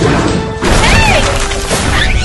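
A sudden loud crash-like blast about half a second in, over background music, followed by a short rising-then-falling cry.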